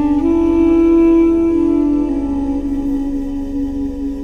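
Armenian duduk playing a slow, sustained melody over a low drone. Its reedy note steps up a little after the start, is held, and steps back down about halfway through.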